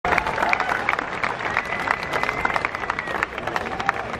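Concert audience applauding, with sharp claps close by. Someone in the crowd whistles one long high note for a couple of seconds in the middle.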